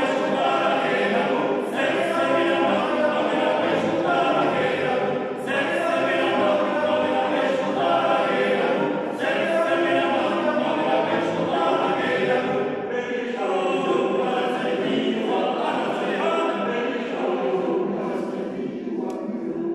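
Small a cappella choir singing a part-song in a stone church, with brief breaks between phrases every few seconds.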